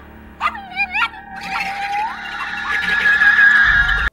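Film soundtrack: a few short gliding yelps in the first second, then music that swells louder with a sustained high tone, which cuts off suddenly at the end.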